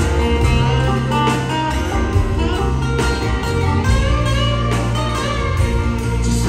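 Live country band playing an instrumental break at full volume: a lead guitar line over steady bass, keyboards and drums, with no vocals.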